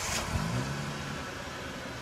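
Car engine sound effect: an engine that has just fired, its low note rising briefly about half a second in and then settling into a steady run that slowly fades.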